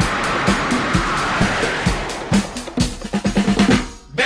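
Drum kit in a 1973 ballad-rock recording: a cymbal wash over kick and snare hits, then a quick drum fill of rapid strokes near the end.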